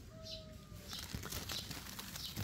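Faint outdoor background with distant bird calls: a soft, drawn-out call that rises and falls in the first half second, and a few faint high chirps. Faint scattered ticks follow.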